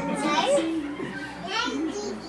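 Speech only: voices talking, with a couple of rising exclamations.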